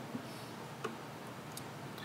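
Quiet room tone in a meeting room with a few faint small clicks, the clearest a little under a second in.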